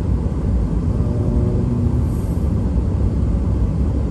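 Steady low rumble of a car driving on a paved road, heard from inside the cabin: tyre and engine noise.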